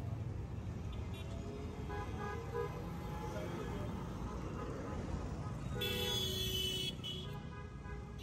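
Street traffic with a steady low rumble of passing vehicles. A vehicle horn sounds for about a second past the middle, and a fainter toot comes about two seconds in.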